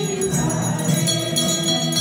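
A group of voices singing a Hindu devotional song together, with small hand bells ringing steadily over it.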